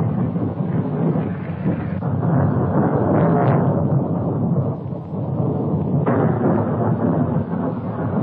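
Thunderstorm: steady rain with rolling thunder that swells about two seconds in and again about six seconds in.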